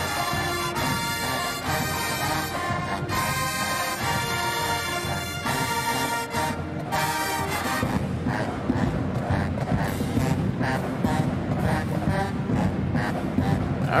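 Marching pep band brass section with sousaphones and trumpets playing loud held chords, which give way about six seconds in to a drum-driven groove with regular beats under the horns.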